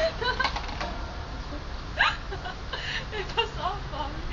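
Short bursts of voices and giggling, with a quick rising yelp about halfway through and a few light clicks near the start.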